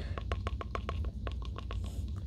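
Vinyl Funko Pop bobblehead figure being jiggled, its spring-mounted head rattling in a fast, even run of light clicks, about ten a second.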